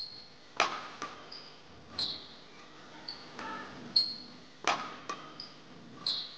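Badminton rally: racket strings striking a shuttlecock about once every one to two seconds, each hit a sharp knock, with short high squeaks from shoes on the court floor in between.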